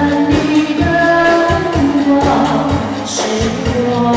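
A woman singing a pop song through a PA, holding long notes, backed by a live band of electric bass, guitar and keyboard with a steady beat.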